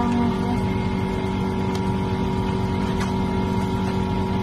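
A steady machine-like hum with a low drone under it, and a couple of faint clicks.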